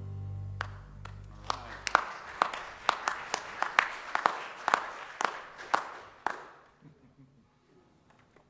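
Final held low notes of a jazz trio's upright bass and piano dying away, then brief, sparse applause from a small congregation: scattered single claps echoing in the hall, thinning out and stopping about six seconds in.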